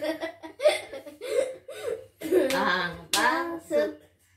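A woman and a young girl laughing and calling out without words, with hand claps from a clapping game.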